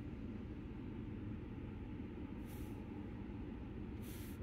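Ford F-150 engine idling: a steady, faint low hum, with a brief faint hiss about halfway through.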